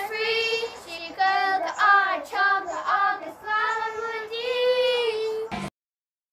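A child singing a melody in a high voice, holding long notes and gliding between them; the singing cuts off suddenly near the end, leaving dead silence.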